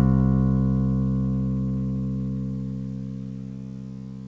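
A single long bass-guitar note, sounded just before and held through as a tied whole note, slowly fading. It is part of a bass line played back at half speed.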